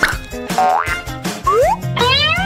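Background music with a steady bass line and several quick cartoon-like sound effects that rise in pitch.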